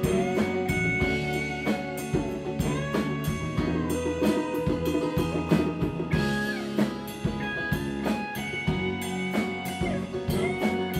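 Live rock band playing an instrumental passage, with a drum kit keeping a steady beat under electric guitar and keyboards. Long held high notes and a few bent notes carry the melody, likely an electric guitar lead. The sound is picked up by the camera's own microphone.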